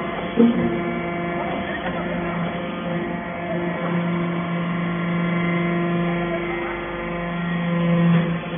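Hydraulic briquetting press for cast-iron chips running: a steady, pitched machine hum that grows a little louder in the middle and again near the end. A short knock comes about half a second in.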